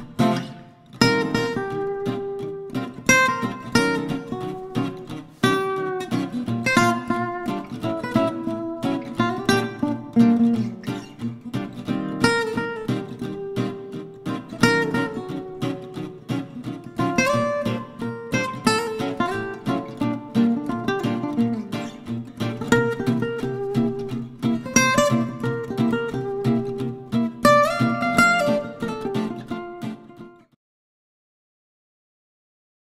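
Background music: an acoustic guitar piece of quick plucked and strummed notes.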